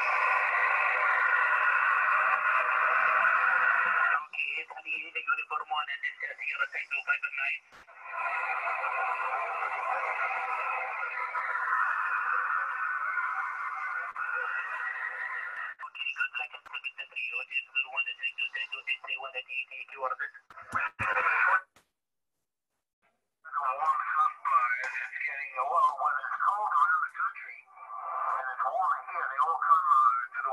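Amateur HF radio transceiver receiving single-sideband, heard through its loudspeaker: thin, narrow-band static alternating with choppy stretches of weak, garbled voices, with a brief total drop-out about two thirds of the way in.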